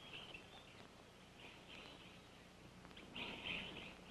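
Faint outdoor wildlife ambience: high chirping that swells about a second and a half in and again just after three seconds, over a low background hiss.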